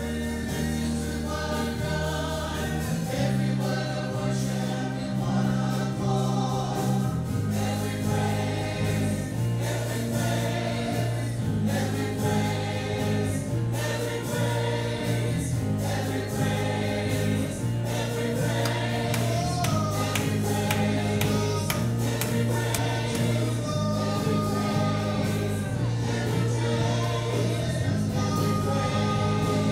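Live worship band playing a song, with guitars and several singers at microphones; held bass notes change every few seconds under the singing.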